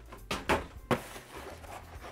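Cardboard box being handled and lifted off a desk: three quick knocks in the first second, then soft scraping and handling noise.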